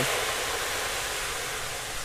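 Chopped marinated pork tipped into a large wok of hot garlic oil, sizzling with a steady hiss that slowly fades as the meat cools the oil.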